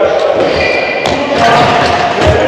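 A handball thudding on the wooden floor of a sports hall a few times, with the echo of the large hall.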